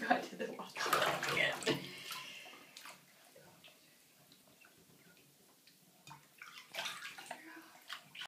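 Shallow bathwater splashing and sloshing in a bathtub as a baby moves about in it, busiest in the first few seconds, then a pause and a few more splashes near the end.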